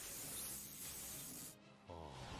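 Faint anime sound effect of lightning magic: a steady hissing, gritty crackle under background music, dropping away about one and a half seconds in.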